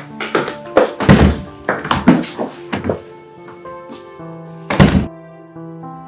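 A run of knocks and thuds, with two heavy door slams, one about a second in and one near the end, over background music with sustained notes.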